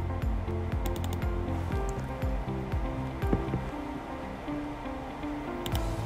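Background music with held notes over a steady low bed.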